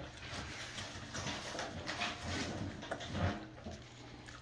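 Miniature American Shepherd eating wet canned dog food from a paper plate: irregular wet chewing, smacking and licking, loudest about two and three seconds in.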